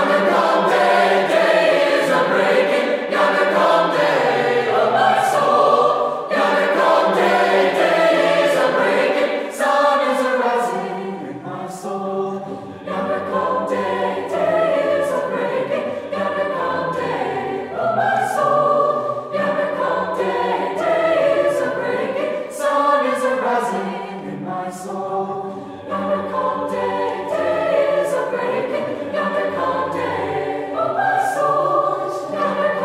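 Mixed choir of high-school singers, men's and women's voices together, singing sustained chords that shift from one to the next. It gets briefly softer about twelve seconds in and again near twenty-five seconds.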